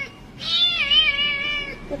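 Young tabby cat meowing in distress while restrained in a towel: one long, wavering cry that starts about half a second in and lasts over a second.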